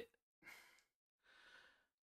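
Near silence with two faint breaths from a man pausing between phrases, one about half a second in and a longer one about a second and a half in.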